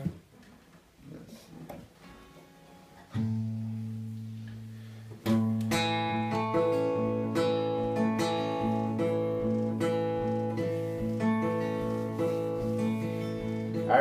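Acoustic guitar: a few faint plucks while the tuning pegs are being turned, then a low open string rung and left to sound about three seconds in. From about five seconds in, steady chord strumming in an even rhythm.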